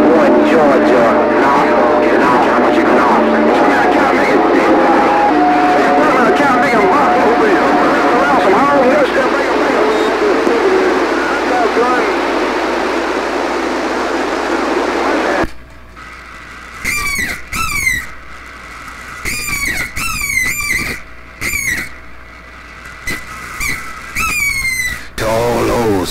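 CB radio receiver playing a strong incoming signal of garbled, overlapping voices and steady tones, which cuts off suddenly about fifteen seconds in as the signal drops. After that, short whistling squeals slide up and down in pitch.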